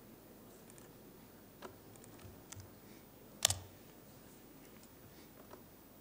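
A few scattered clicks and taps from a laptop's keys and mouse buttons as it is worked, the loudest a quick double click about three and a half seconds in, over faint room tone.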